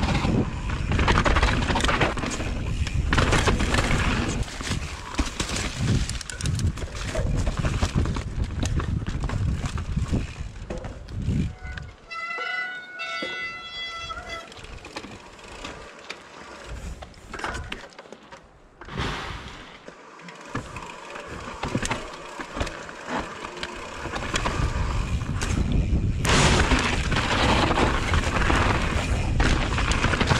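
Mountain bike riding over rock slabs and a dirt trail, heard from a bike-mounted camera: the rumble and rattle of tyres, frame and suspension over rough ground, with many small knocks. It goes quieter through the middle, where a brief high whine sounds for about two seconds, then grows loud and rough again near the end.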